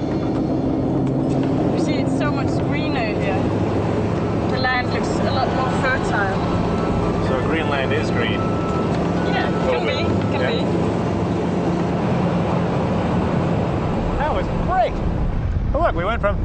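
Steady engine drone of a small propeller passenger plane heard from inside the cabin, with faint, indistinct voices over it; clearer talk comes in near the end.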